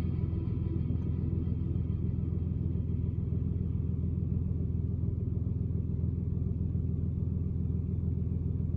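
Steady low rumble of a car idling, heard from inside the cabin. Faint last notes of music die away in the first second.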